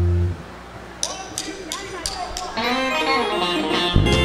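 A rock band opening a song: a short low bass note at the start, then about a second in a guitar picks a string of single notes, with more instruments building in near the end as the full band is about to come in.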